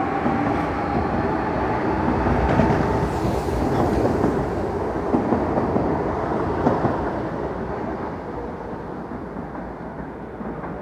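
CAF 7000 series electric multiple unit pulling out and passing close by, a steady rumble of wheels on the rails with a faint whine at first. The sound dies away over the last two seconds as the train moves off.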